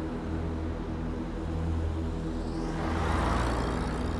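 A car passing close by, its tyre and engine noise swelling to a peak about three seconds in, over a steady low music score.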